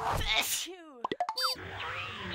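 Title-sequence sound effects: cartoonish boing-like pitch glides that swoop up and down, with a flurry of quick glitchy clicks about a second in.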